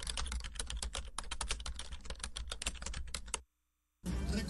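Computer keyboard typing sound effect: rapid, irregular key clicks that stop abruptly about three and a half seconds in.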